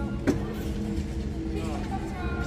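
A single sharp smack about a quarter of a second in, a strike landing in a wushu sanda bout, over the steady hum of a sports hall. A voice calls out near the end.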